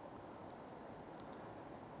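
Quiet outdoor background with a few faint ticks of small fishing tackle, a swivel and trace, being handled, and a couple of faint high chirps.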